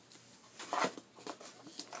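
Quiet handling noises: a few short rustles and taps as things are moved about in a box, the loudest a little under a second in.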